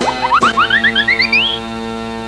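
Cartoon sound effect: a quick run of about a dozen short chirps, each rising, stepping higher and higher in pitch over the first second and a half, over a steady held music tone.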